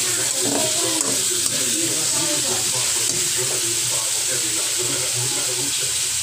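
Onion, carrot and pineapple chunks sizzling in hot oil in a steel wok while a slotted metal spatula stirs them, with a click or two of the spatula against the wok about a second in.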